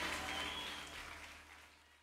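Live audience applause and cheering, fading steadily away to silence as the recording is faded out, over a faint low hum.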